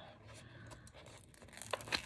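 Paper sticker sheets handled and folded: faint rustling and crinkling of paper, with a few light clicks near the end.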